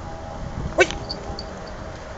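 A wire-haired dachshund puppy gives one short, sharp yip just under a second in.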